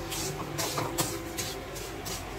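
A spoon stirring granulated sugar into ghee-roasted semolina in a pan: gritty scraping strokes about two a second, over a steady low hum.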